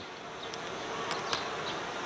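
Honeybee colony buzzing steadily in an open hive, with a few faint clicks near the middle.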